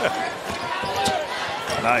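A basketball being dribbled on a hardwood court during play.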